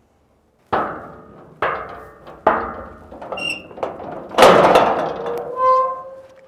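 Three firm knocks on a corrugated metal gate, each ringing briefly, followed by lighter taps. Then a loud metallic clatter as the gate is opened, ending in a steady squeal.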